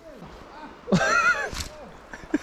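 A man's short, high-pitched excited cry about a second in, rising and falling in pitch, over faint steady background noise.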